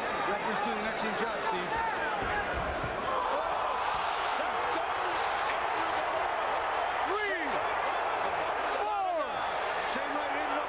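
Boxing-arena crowd noise: a steady din of many voices shouting and yelling at once.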